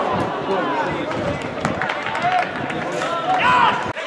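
Footballers shouting and calling to each other during play, over a noisy outdoor background with a few sharp knocks, the loudest calls high-pitched near the end; the sound changes abruptly just before the end.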